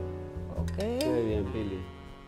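Background music, with a brief voice heard about a second in.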